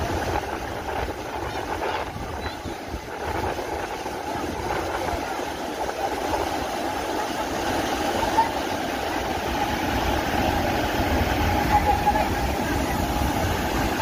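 Water of an overflowing dam rushing over the weir and its spillway steps: a steady rushing noise that grows a little louder toward the end.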